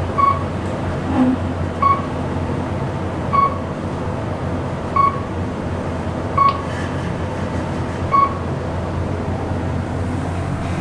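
KONE traction elevator car riding up with a steady low hum, and a short electronic beep sounding six times about every one and a half seconds, once for each floor the car passes.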